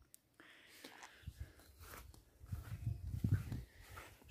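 Faint outdoor background, then soft irregular low thumps and rustling over the second half: handling and walking noise from a handheld camera being moved.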